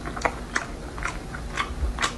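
A person chewing a mouthful of red-braised pork belly, with short smacking clicks of the lips and mouth about every half second.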